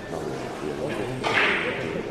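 Low talk in a large room, with a short hissing swish about a second and a quarter in.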